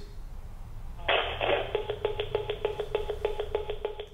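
A steady electronic buzzing tone with fast, regular clicks, heard through a telephone line, starting about a second in.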